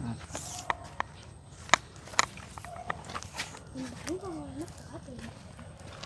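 Scattered sharp clicks and taps of handling noise at irregular intervals, under low murmured voices. One short murmured "ừ" comes about four seconds in.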